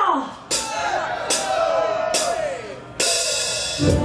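Four crash-cymbal hits, a little under a second apart, with voices shouting over them, then the full live rock band comes in just before the end as the song starts.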